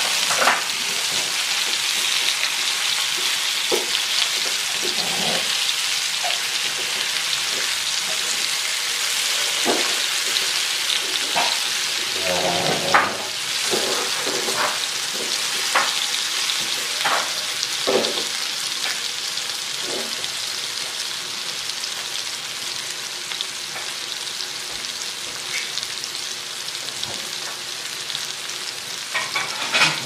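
Bacem-braised tofu and tempeh pieces frying in hot oil in a non-stick pan: a steady sizzle that eases a little toward the end. Scattered taps and scrapes of a spatula turning the pieces, a few together a little before the middle.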